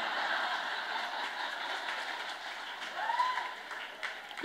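Audience in a hall applauding and laughing after a stand-up punchline, an even wash of clapping that slowly dies away near the end, with a single voice rising out of the crowd about three seconds in.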